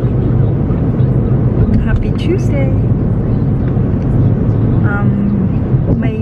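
Steady road and engine rumble inside a moving car's cabin, with short bits of a voice about two seconds in and again near five seconds.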